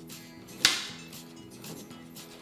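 A single sharp snap about a third of the way in, as a rope is tugged tight while a knot is finished, over soft background music.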